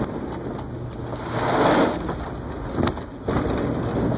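Mud and muddy water spraying and splattering against a vehicle's windshield and body as it drives through a mud bog, a loud rushing wash that swells about one and a half seconds in and dips briefly after three seconds, with the engine humming low underneath and a few sharp ticks of hitting grit.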